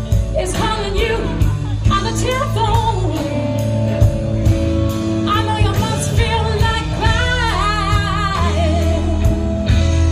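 Live blues band: a woman's lead vocal, held notes with vibrato, over electric guitar, electric bass and a steady drum beat.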